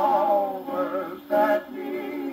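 Hawaiian band music from a 1940 Decca 78 rpm record playing on an acoustic Orthophonic Victrola phonograph: a held, wavering melody line over steady chords, with a short louder note about one and a half seconds in.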